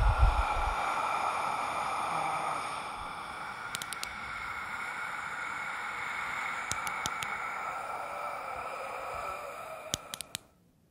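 Suspense film sound design: a deep low boom, then a sustained eerie hissing drone with steady high tones held underneath, broken by a few faint ticks.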